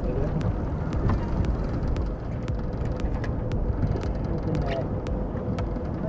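Steady low rumble of wind and water around a small open boat, with scattered light clicks and a faint steady hum.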